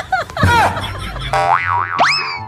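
Cartoon comedy sound effects laid over the video: springy boing-like pitch bends, then a warbling tone that swings up and down twice and a quick rising whistle at the very end.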